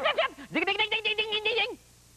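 A man's voice makes a held, quavering nonverbal sound at a nearly steady pitch for about a second, as a comic vocal imitation of how the character could sound. It follows a brief bit of speech and cuts off shortly before the end.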